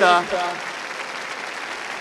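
A large crowd applauding in a steady wash of clapping. The end of a man's speech is heard in the first half-second.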